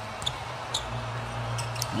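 A basketball being dribbled on a hardwood court: a few faint, sharp bounces over a steady low hum.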